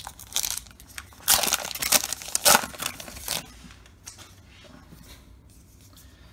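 Trading card pack wrapper being torn open by hand. Short crinkles come first, then the loudest stretch of tearing and crinkling from about one second in to past the halfway mark, then fainter rustling as the cards come out.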